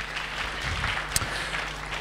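Audience applauding, a steady even clapping at moderate level.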